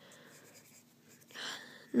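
Pencil eraser rubbing back and forth on paper, smudging and blending graphite shading, faint and even, with a louder short swish about one and a half seconds in.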